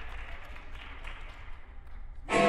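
Scattered audience applause and crowd noise dying away in a large hall, over a steady low hum.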